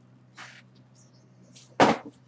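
A single sharp thud near the end: a tossed item landing after missing a garbage can.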